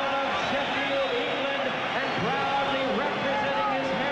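Large arena crowd cheering and shouting, many voices overlapping at a steady level.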